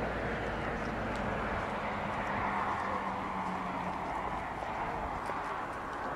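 A motor vehicle's engine hum fading away under a steady outdoor rushing noise, which swells slightly midway and then eases.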